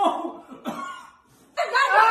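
A woman coughing and sputtering in the first second, after eating a prank food. A loud voice breaks in near the end.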